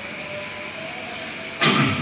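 Steady background noise of the room and microphone during a pause in a man's Arabic recitation. Near the end there is a sudden loud sound as his voice comes back in.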